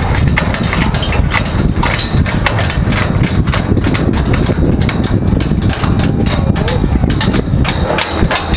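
Construction-site work on steel pipe scaffolding: frequent, irregular metal clanks and taps over a steady low engine rumble.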